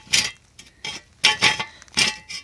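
A steel jack stand being handled and set down on concrete: a few sharp metallic clicks and knocks.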